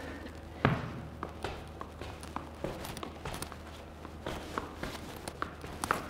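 Soft, irregular taps of a tennis ball being kept up off the foot, mixed with shoe steps shuffling on a wooden floor. About a dozen light taps, the clearest one under a second in.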